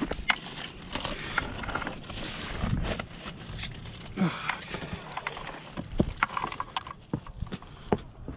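Irregular clicks, knocks and scuffs of someone moving over granite boulders and dry brush, with handling knocks from the rifle-mounted camera and gear. Faint voices come in briefly partway through.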